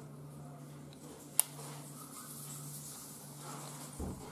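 A single sharp click about a second and a half in, as fingers handle a small plastic part on a Panasonic camcorder, over a faint steady low hum.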